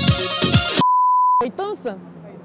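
Electronic intro music with a pounding kick beat cuts off abruptly, replaced by a single steady electronic beep lasting about half a second. A woman's voice then comes in briefly over quieter outdoor background.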